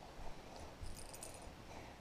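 Faint rustling and light handling noise in a quiet room, with a few soft bumps.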